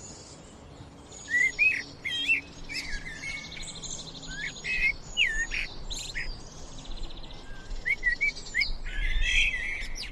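Common blackbird singing: phrases of low whistled notes that slide up and down in pitch, with higher, thinner twittering notes among them. The song starts about a second in and carries on in separate phrases.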